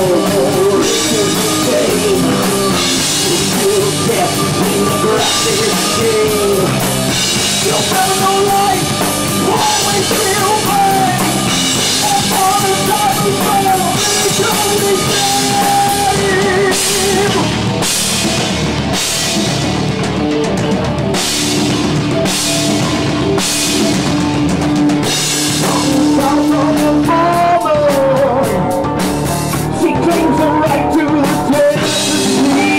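Live rock band playing with drum kit, electric guitar and synthesizer keyboard. Cymbal crashes land about once a second in the second half.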